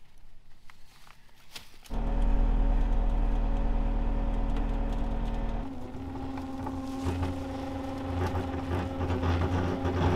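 A recovery winch, driven by a motor, starts abruptly about two seconds in and runs steadily as it takes up the cable to put tension on the rolled truck. About halfway through its tone changes to a different steady drone. Before it starts there are light clicks from the cable rigging.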